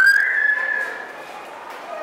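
A dog whining: one high-pitched whine that rises sharply, then holds steady for about a second before fading.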